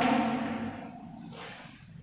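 A woman's drawn-out spoken vowel fading out in the first half second, then a short scratchy sound about a second and a half in.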